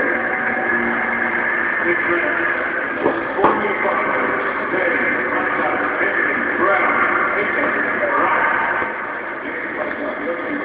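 Crowd hubbub in an indoor athletics arena: a steady din of many voices before the men's 400 m final. It eases a little near the end.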